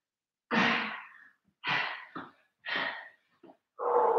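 A woman breathing hard from exertion during press-ups: four heavy, audible breaths, about one a second.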